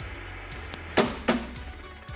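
Two sharp knocks in quick succession about a second in, a hand slapping the top of an old tube television set, over steady background music.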